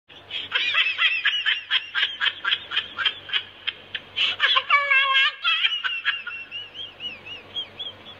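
A bulldog puppy squeaking in a rapid, high-pitched series of about five yelps a second, then giving one longer whine about five seconds in, followed by small rising-and-falling squeaks.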